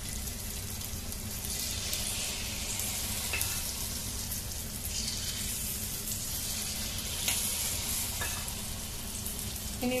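Luqaimat dough balls deep-frying in hot oil over a low flame in an aluminium wok: a steady sizzle, with a few faint clicks of a steel spoon as more batter is dropped in.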